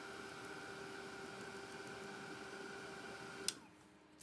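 Handheld craft heat tool running with a steady fan whir and hum, drying freshly stencilled paint. It cuts off with a click about three and a half seconds in.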